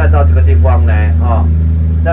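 Steady low drone of a tour boat's engine underway, the loudest thing throughout, with a voice talking over it.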